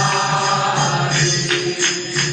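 Devotional chanting with musical accompaniment: a steady held sung note, with a few light percussive strikes in the second half.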